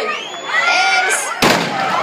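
A crowd of runners talking and calling out, then a single loud bang about one and a half seconds in: the starting shot that signals the start of the race.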